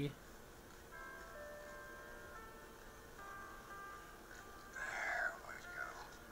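Faint background music: soft sustained chords, changing about three seconds in. A short, louder rustling sound comes about five seconds in.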